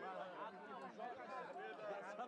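Indistinct, overlapping chatter of several spectators' voices talking at once.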